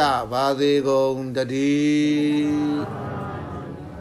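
A man's voice chanting in a Buddhist blessing chant, one drawn-out phrase ending on a long held note that stops about three seconds in, leaving only a faint background.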